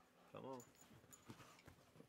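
A man's brief words, then a few faint light knocks and clinks as beer cans or bottles are handled on a table.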